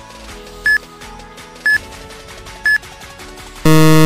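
Countdown timer sound effect: three short beeps a second apart over soft background music, then a loud buzzer near the end as the timer runs out.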